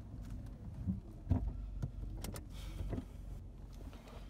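Seat Ibiza's 1.4 16-valve petrol engine running at low revs, heard from inside the cabin as a steady low hum, with a few light clicks and knocks.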